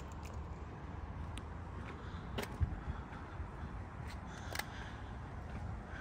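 Quiet outdoor background: a low, steady rumble with a few faint, short ticks scattered through it.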